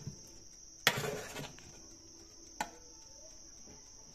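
A metal spatula and baking tray clanking in an oven: a light knock at the start, a sharp clank with a brief scrape about a second in, and another knock near the end. A steady high-pitched chirring of crickets runs underneath.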